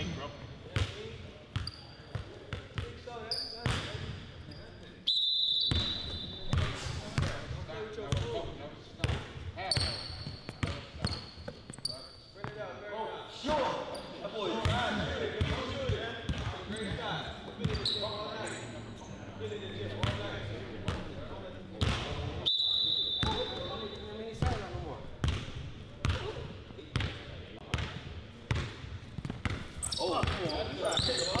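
Basketball bouncing on a hardwood court floor, a run of sharp knocks, with two brief high sneaker squeaks and players' voices in between.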